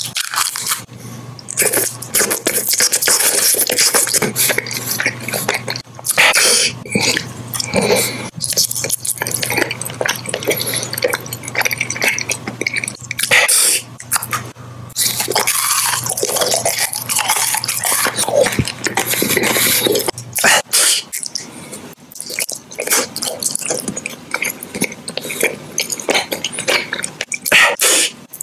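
Close-miked eating sounds: candy wrappers crinkling, then biting and wet chewing of candy, in a run of loud crackly bursts broken by short pauses.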